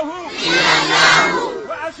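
Crowd shouting together in a call-and-response chant: a loud massed shout from about half a second in, lasting about a second, then a single voice with rising and falling pitch near the end.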